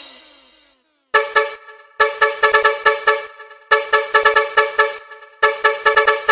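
A car-horn sample in a budots dance remix, honking in rapid rhythmic stabs with no bass beat under it. It enters about a second in, after the previous phrase falls away into a moment of silence, and pauses briefly twice along the way.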